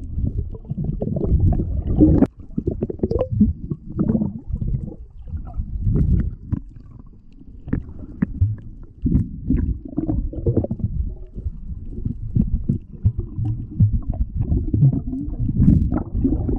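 Muffled underwater noise from a submerged camera: low rumbling water movement that swells and fades in irregular surges, with scattered small clicks.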